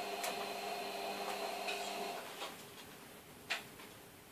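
Light plastic clicks and taps from a replacement keyboard being handled and fitted onto an Asus Eee PC netbook's chassis, the sharpest click about three and a half seconds in. A faint steady hum underneath fades out about halfway through.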